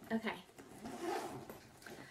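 Zipper on a small backpack being pulled open, a scratchy run lasting about a second, just after a short spoken word.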